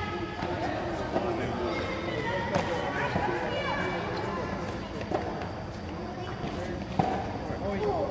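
Tennis balls being hit back and forth in a rally, a sharp knock every second or two, under background voices.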